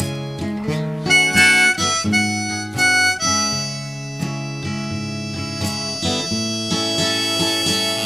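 Hohner diatonic blues harp on a neck rack playing a melodic solo over a strummed Johnson JSD-66 acoustic guitar, with a few loud accented high notes in the first three seconds.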